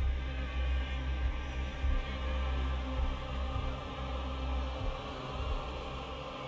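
Intro music: sustained, held tones over a deep, continuous bass drone.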